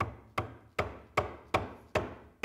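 A mallet tapping a wooden leg down onto its tenons and the panel's grooves: six short, even knocks about two and a half a second.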